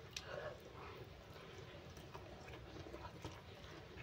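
Faint, close mouth sounds of a person chewing rice and vegetables by hand-eating: small wet clicks and smacks, with a slightly louder cluster just after the start, along with soft sounds of fingers picking food from the plate.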